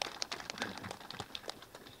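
Scattered applause from a small group of people, the individual hand claps distinct and thinning out toward the end.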